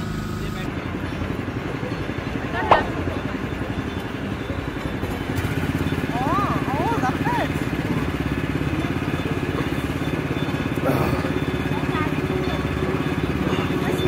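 Small petrol engine running steadily, driving a sugarcane juice crusher, with a single sharp clank about three seconds in.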